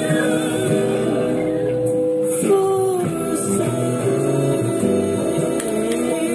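Music with singing: a vocal line of long held notes over instrumental accompaniment, with a short slide in pitch a little before halfway.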